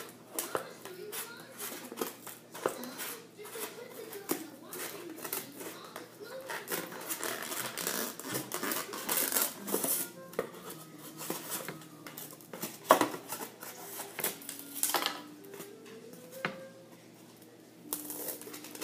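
Scissors cutting through a foam meat tray: a long run of irregular snips and crunching cuts.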